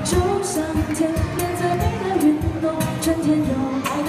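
Live acoustic guitar strummed in a steady rhythm under a woman singing a Mandarin pop song, amplified through a PA.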